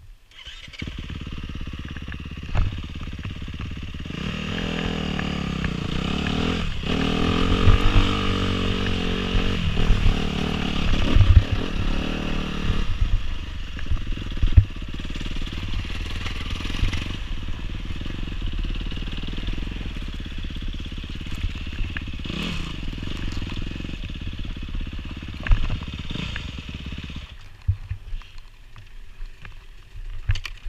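Honda dirt bike engine running under a rider, revving harder and wavering in pitch for several seconds in the middle, then settling to a lower, steadier note. It drops away near the end as the bike comes to a stop. A few sharp knocks come through as it rides over rough ground.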